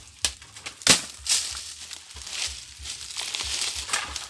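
Dry coconut-palm fronds rustling and crackling as a long wooden pole is pushed up among them toward a coconut bunch, with a few sharp knocks, the loudest about a second in.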